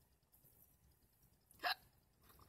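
A person hiccups once, a short sharp catch about one and a half seconds in.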